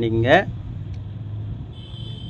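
A man's voice finishes a drawn-out word, then a low steady hum carries on under a pause in the talk, with a faint thin high tone coming in near the end.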